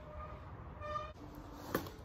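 Mountain bike rolling over a dirt trail up to a jump: a low steady rumble, a short pitched tone about halfway through, and a sharp knock near the end as the bike hits the take-off.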